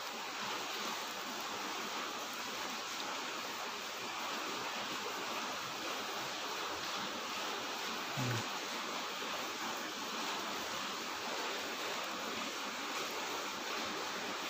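A steady hiss of background noise, with a brief low hum of a voice about eight seconds in.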